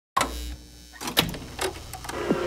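A sudden low thump and hum out of silence, then a faint steady tone and three sharp clicks, the sound of equipment being handled.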